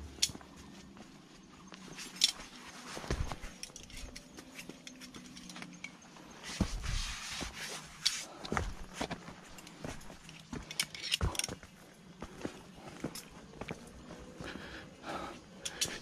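A climber's footsteps and shoe scuffs on rock, irregular light knocks and scrapes with some rubbing, while picking a way over boulders.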